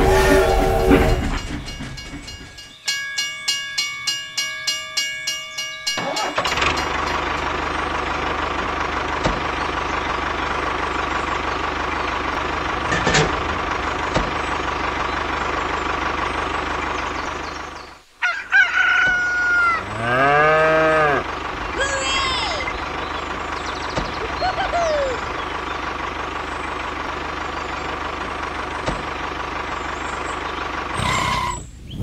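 A toy train's whistle and running fade out, then a ringing warning signal repeats about three times a second for a few seconds. After that comes a steady tractor-like motor running sound with a thin whine, broken near the middle by farm animal calls, a rooster crowing among them.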